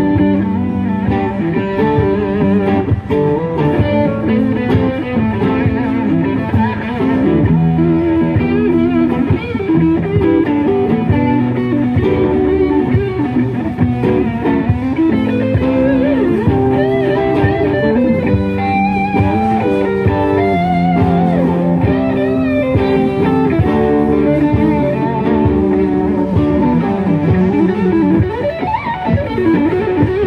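Two amplified electric guitars playing together in a live jam, with melodic lead lines over rhythm playing. Held notes are bent and shaken with vibrato, most clearly in the second half.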